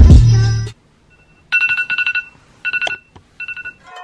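Hip hop intro music with heavy bass cuts off under a second in. Then a smartphone alarm sounds: three bursts of rapid, high electronic beeps, each beep on the same two-note pitch.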